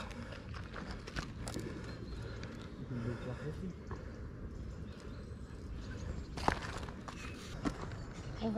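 Quiet outdoor background on a gravel path: a few short knocks and scuffs from handling a phone case and gear on the gravel, with faint distant voices.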